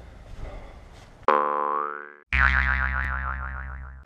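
Cartoon "boing" sound effects edited into the video. About a second in there is a springy twang with a rising pitch. After a brief gap comes a longer, wobbling boing.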